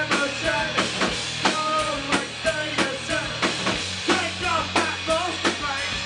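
Live rock band playing: a drum kit beating steadily at about three hits a second under electric guitars.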